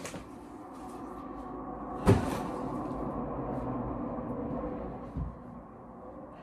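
Bags and clothes being handled and set down, with a sharp knock about two seconds in and a softer thump near the end, over a steady low rumble that swells and fades.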